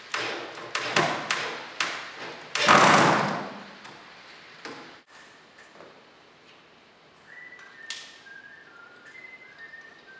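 Wooden dresser drawers and panels knocked and set down, a quick series of sharp wooden knocks. A louder clatter and scrape about three seconds in, as a piece is shifted or dropped. It goes quieter after that, with a few faint high notes toward the end.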